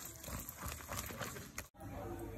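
A hand squishing and mixing thick gram-flour batter in a steel bowl, a quick run of wet slaps and clicks. It cuts off abruptly near the end.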